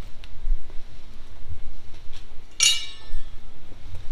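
A piece of steel clinks once with a short bright ring about two and a half seconds in, over a low rumble of handling noise.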